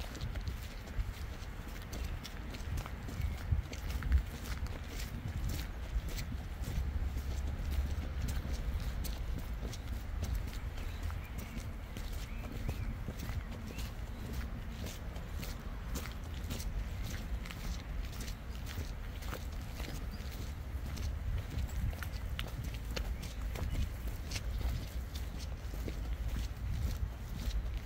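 Footsteps of a person walking along a footpath, a run of irregular light steps over a low rumble.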